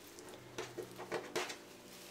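Faint rustling and a few soft taps of a cloth bundle of spices being rolled and handled by hand on a countertop.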